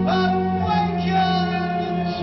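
Live band music from a post-rock chamber ensemble. A high melodic line swoops in and is held over a steady low drone, either bowed strings or a high voice.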